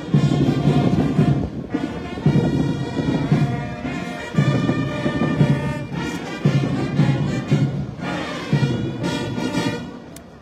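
Ceremonial brass band music played while a salute is taken: slow sustained brass notes over a steady low beat. The band stops at the very end.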